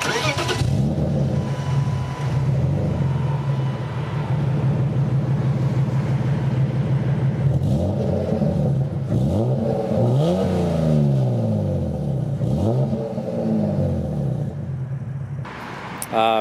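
BMW E36 coupe's custom exhaust: the engine idles steadily, then is revved a few times, the pitch rising and falling with each blip of the throttle.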